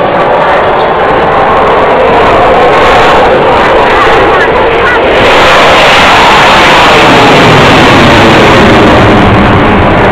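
Loud jet engine noise from an F-16 fighter flying an aerobatic display. The noise swells and grows brighter about five seconds in, with voices underneath.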